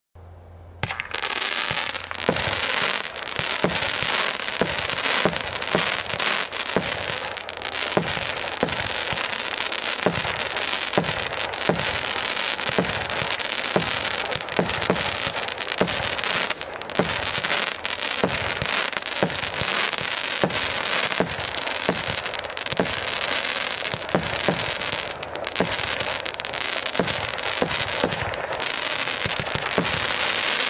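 A 50-shot consumer fireworks cake (Zeus Monsoon Blast) firing: about a second in it starts launching shots at a steady pace of roughly one to two a second, over a continuous crackling hiss from the gold tails and stars.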